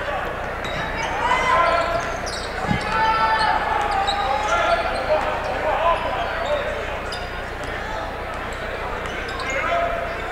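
Basketball game sounds on a hardwood gym floor: the ball bouncing as it is dribbled, sneakers squeaking in short chirps, and a murmur of crowd voices. One sharp thump stands out about three seconds in.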